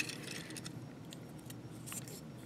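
Plastic parts of a Transformers Voyager Class Whirl action figure clicking as its geared arms are folded and pegged together. There is one sharper click right at the start, then a few faint scattered clicks.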